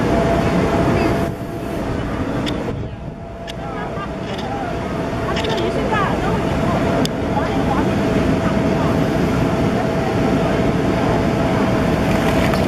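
Steady drone of an inflatable slide's electric air blower, carrying a constant hum, with the chatter of voices around it. The level dips for a couple of seconds about one second in, and there is a sharp click about seven seconds in.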